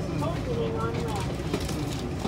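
Low, steady rumble of a TEMU2000 Puyuma Express electric train pulling slowly into an underground station, heard from inside the carriage, with people's voices over it.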